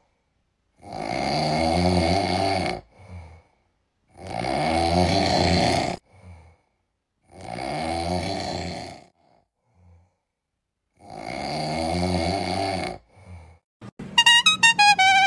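Snoring: four long snores of about two seconds each, roughly every three seconds, each followed by a short, softer breath.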